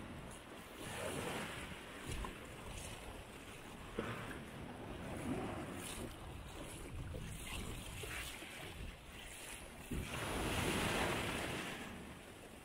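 Small sea waves breaking and washing up a gravelly shore, surging in and drawing back several times, with the loudest wash near the end.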